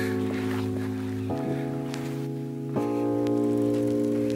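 Background music: held chords that change about every second and a half.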